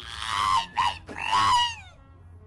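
A voice screaming in three loud bursts: a long one, a short one, and a last long one that falls in pitch at its end.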